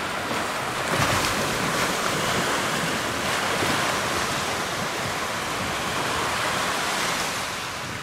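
Sea surf washing onto a sandy beach, a steady rush of breaking waves that swells a little about a second in, with some wind on the microphone.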